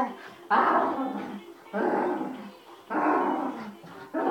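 An excited dog giving three drawn-out vocalisations about a second apart, each falling in pitch.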